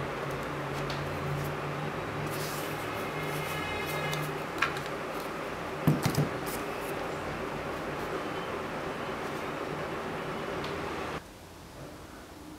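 Handling sounds of a hard drive being taken apart over a steady hum and hiss: small squeaks and clicks of a screwdriver working the cover screws, then a few knocks about six seconds in as the top cover comes off. The hum drops away suddenly about a second before the end.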